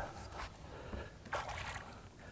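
Largemouth bass splashing at the water's surface beside the boat as it is played in, with a short burst of splashing a little past halfway.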